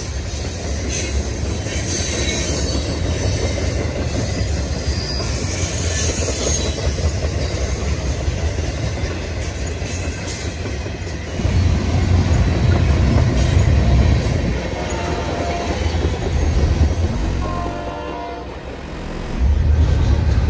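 A freight train of boxcars, tank cars and double-stack container cars rolling past close by: a steady, deep rumble of steel wheels on the rails with clicking over the rail joints. It grows louder about two-thirds of the way through.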